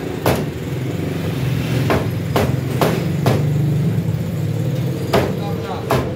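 Heavy meat cleaver chopping chicken on a wooden block: six sharp strikes, with one just after the start, a run of four about half a second apart around two to three seconds in, and one more near the end.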